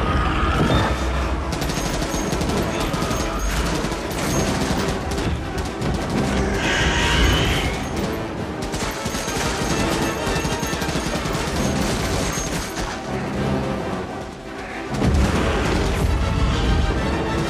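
Long, rapid automatic rifle fire over a loud orchestral film score, with a short shrill cry about seven seconds in.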